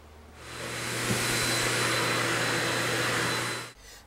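An electric motor running steadily with a rush of air and a low hum. It swells up over about the first second and cuts off abruptly shortly before the end.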